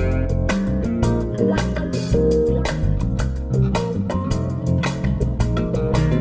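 Electric bass guitar playing a smooth, funky line of plucked notes, together with electric guitar, in a steady rhythm.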